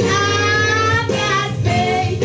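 A young girl singing a gospel song into a handheld microphone over an instrumental backing. She holds one long note for about a second, then starts a new line about halfway through.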